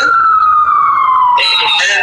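Emergency vehicle siren wailing: one tone sliding slowly down in pitch for about a second and a half, on a slow rise-and-fall cycle.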